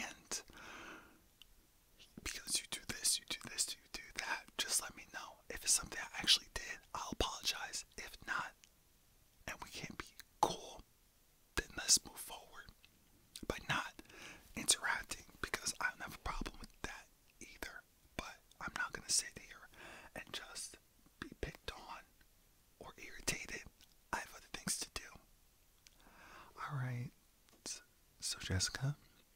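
A man whispering close to the microphone in short phrases with brief pauses, the breathy, hissing speech of ASMR.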